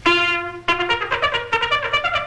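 Trumpet in an early-1930s cartoon score playing one held note, then a quick run of short notes from just under a second in.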